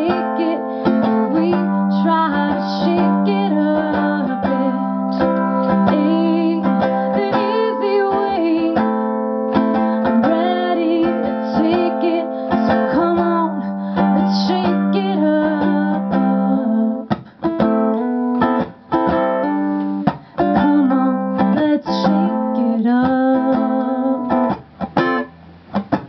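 Live solo performance: a woman's voice with a ukulele played along. About two-thirds of the way in, the long held tones stop and the playing turns choppier, with several brief gaps.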